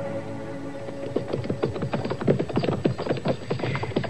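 A dramatic music bridge of held chords fades out in the first second. Then sound-effect hoofbeats of horses going at a brisk pace come in, several strokes a second.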